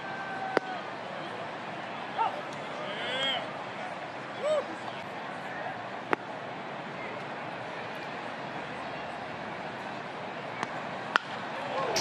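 Ballpark crowd noise, a steady murmur with a few distant fan shouts. Two sharp pops of pitches into the catcher's mitt, one just after the start and one about six seconds in, then the crack of a bat hitting the ball near the end.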